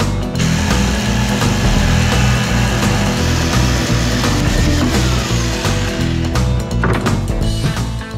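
Electric jigsaw cutting through a laminated desk board, a dense buzzing rasp starting about half a second in and stopping near the end. Background music with a steady beat plays underneath.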